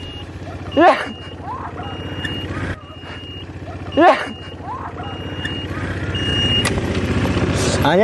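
All-terrain vehicle engine running steadily, growing louder over the last few seconds, with a high single-tone beeper sounding about once a second. Two short loud shouts cut in, about a second in and about four seconds in.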